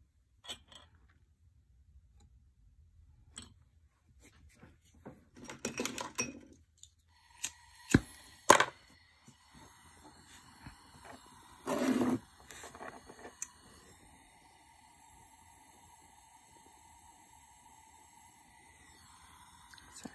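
Small metal clinks as tweezers and silver chain links are handled on the soldering block, then two sharp clicks about eight seconds in and a small jeweller's soldering torch running with a faint steady hiss and thin whistle, which stops shortly before the end.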